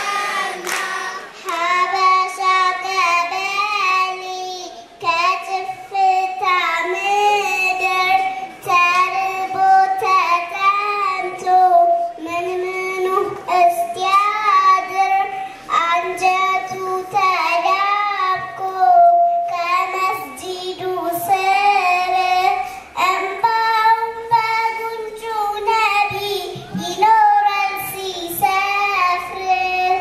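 Children singing a menzuma, an Islamic devotional song, in high voices. The melody moves in wavering, ornamented phrases of a second or two each.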